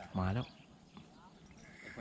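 A man's short exclamation about a quarter second in, then faint open-air background with no distinct sound.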